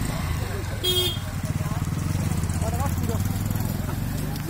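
A motorcycle engine running steadily at idle, with a brief horn toot about a second in.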